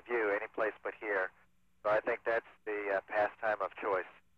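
Speech over a radio link, the voice thin and cut off above the middle of the range.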